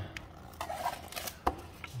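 Foam board handled and bent along a crushed crease, with light scraping and rustling of the foam and paper facing, and a single sharp click about one and a half seconds in.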